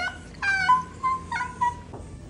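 A high-pitched voice making a few short squealed or sung notes, one gliding down about half a second in, then several brief notes held on one high pitch.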